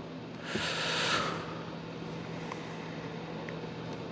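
A single breath into the podium microphone, about a second long, starting about half a second in. Under it runs a steady low hum, and two faint ticks come later.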